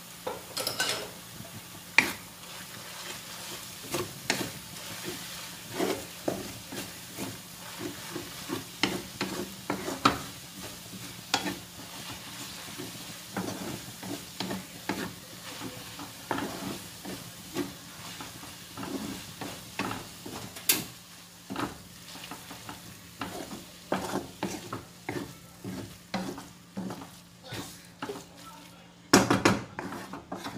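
A utensil stirring and tossing pasta in a sizzling pan: irregular knocks and scrapes against the pan, about one or two a second, over a steady sizzle, with a louder clatter near the end.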